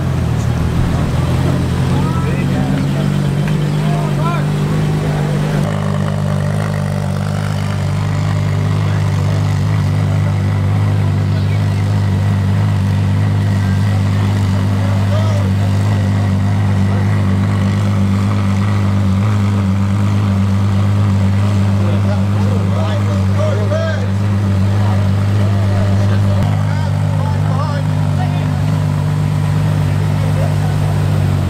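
Ferrari LaFerrari's V12 running at a steady idle, its pitch stepping down a little about six seconds in and back up near the end, with crowd chatter over it.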